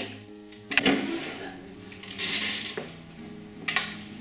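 Clear sticky tape being pulled off a desk dispenser roll and cut: a sharp snap about a second in, a longer rasping peel about two seconds in, and another snap near the end. Soft background music runs underneath.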